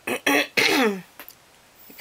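A woman coughing and clearing her throat, a few short bursts in the first second, then a lull.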